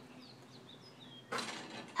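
Faint bird chirps in the background. About a second and a half in, a short clatter comes as the thrown basketball strikes the backyard hoop.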